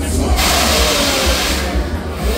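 A loud hiss of air from a Welte Big Spin fairground ride, starting about half a second in and lasting over a second as the ride's arms lower. Fairground music with a steady bass plays underneath.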